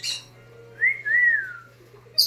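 Brown-headed parrot giving a two-note wolf whistle about a second in: a short rising note, then a longer one that rises and falls. The whistle follows a brief noisy burst right at the start.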